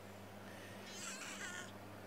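A domestic cat gives one short vocalization lasting under a second, about a second in.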